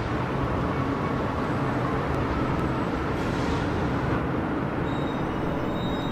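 Steady traffic noise from a busy multi-lane highway, many vehicles passing at speed.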